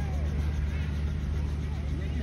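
Helicopter running with a steady low drone, with faint voices of people nearby.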